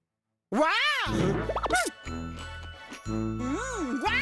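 Silence for about half a second, then a voice calls out a long, swooping 'Waah!' that rises and falls in pitch. An advertising jingle with steady bass notes follows, with a second, shorter swooping call near the end.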